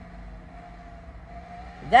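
Low, steady background rumble and hum, then a man's voice calling out loudly right at the end.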